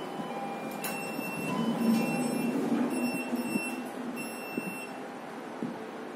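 Fujitec elevator car travelling downward: a steady running rumble that swells about two seconds in. A click comes just before it, and a high-pitched tone sounds on and off throughout.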